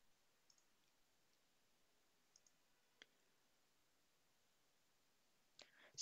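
Near silence, broken by a few faint computer mouse clicks: a quick pair about half a second in, another pair at about two and a half seconds, and a single sharper click a moment later.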